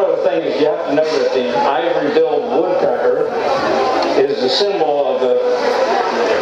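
A man talking without a break: only speech.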